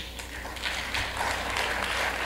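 Audience applause, starting about half a second in and building, heard through a television speaker, with a low steady hum underneath.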